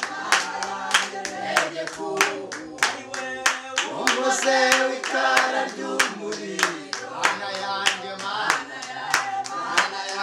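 A small group of men and women singing a worship song together with steady hand-clapping, about three claps a second.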